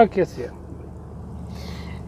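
Steady low drone of a car-transporter truck under way, heard from inside the cab, after a man's short word at the start.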